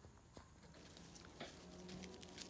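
Near silence with a few faint clicks of two small dogs' paws scuffling on gravel as they play-wrestle, and a faint low steady hum from about a second in.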